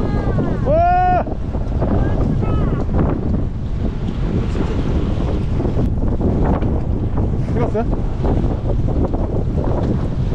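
Wind buffeting the microphone aboard a boat at sea, a steady low rumble with the wash of choppy water. A short vocal exclamation comes about a second in.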